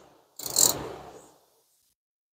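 Hand ratchet wrench working a brake caliper bolt: one short burst of tool noise about half a second in that fades out within about a second.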